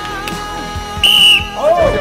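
A single short, loud whistle blast about a second in, signalling the start of a bout, over background music; excited voices break in right after it.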